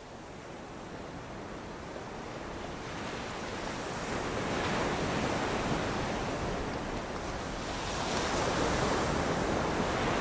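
Ocean surf sound effect played over a stage sound system: a steady wash of breaking waves that fades in from silence and swells twice, around the middle and near the end.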